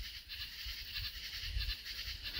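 Faint background nature-sounds ambience with animal sounds in it, a soft even outdoor hush over a low rumble.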